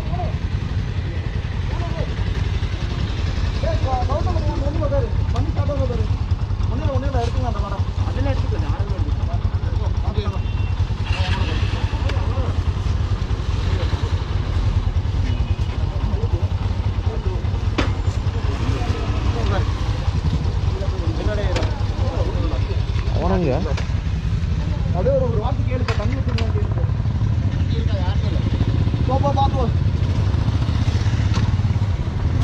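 Several men talking over a steady low rumble of an idling motorcycle engine.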